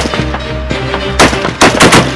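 Mounted machine gun firing: one shot at the start, then a quick run of about four shots in the second half, over background music.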